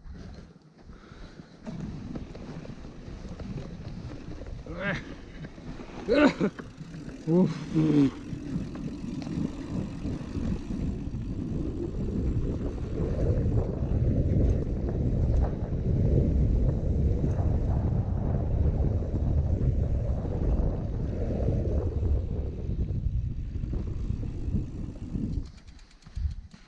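Mountain bike ridden over a loose sandy dirt track: a steady low rumble from the ride that grows louder about halfway through and dies away just before the end as the bike stops.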